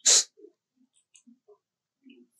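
Baby macaque giving one short, loud, breathy cry right at the start, followed by a few faint clicks and rustles.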